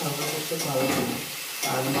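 Food sizzling in a hot kadai on a gas stove while a metal spoon stirs it, with a steady hiss of frying oil under a man's voice.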